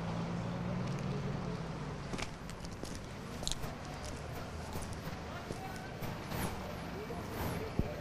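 Faint outdoor ambience with a low, steady engine hum for the first two seconds or so that then fades, leaving a quiet background with a few scattered knocks.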